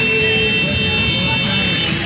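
A vehicle horn held steadily for nearly two seconds, cutting off just before the end, over the noise of a street crowd.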